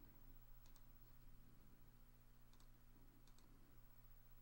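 Near silence with three faint pairs of computer mouse clicks, as menu items are picked, over a faint steady low hum.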